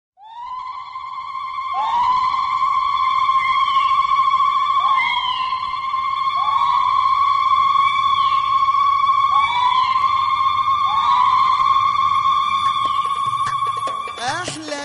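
Women's ululations (zaghareed): long, high, held trills, each scooping up into pitch as it begins, with new voices coming in every couple of seconds and overlapping.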